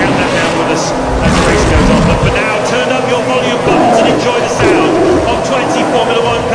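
Formula One car engines running, with a voice over them.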